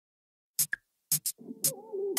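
Opening of an electronic dance track: after about half a second of silence, sharp drum-machine hits come in, and about a second and a half in a synth tone with gliding, bending pitch joins them.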